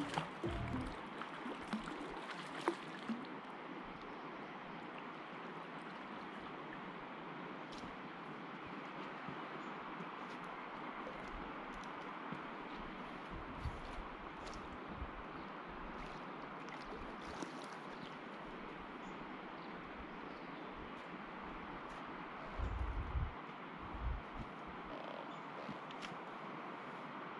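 Steady rushing of flowing river water, with a few light clicks and some low thumps near the end.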